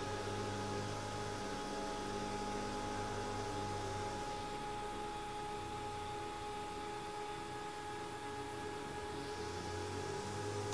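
iOptron CEM60EC equatorial telescope mount slewing in declination and right ascension under a full 60 lb payload, its drive motors giving a faint, steady whine. Under it runs the steady drone of lawnmowers outside, louder than the mount.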